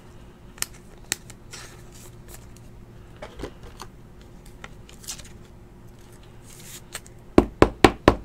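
Trading cards and a hard plastic card holder handled on a table: scattered small ticks and rustles, then three or four sharp plastic clicks in quick succession near the end.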